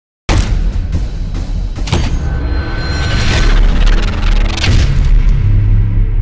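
Cinematic intro sound effects: deep booms and sharp glitchy hits cut in suddenly over a heavy low drone, the hiss and crackle above thinning out by the end while the low hum carries on.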